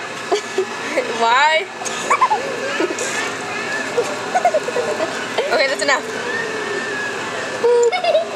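Young people's voices talking and chattering, with laughter near the end.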